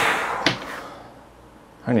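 A sudden loud whoosh lasting about half a second, cut off by a sharp click, then fading away.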